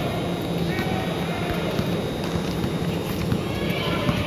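Indoor basketball game: players' running footsteps thudding on the court, with several short sneaker squeaks, over a steady murmur of spectators' voices.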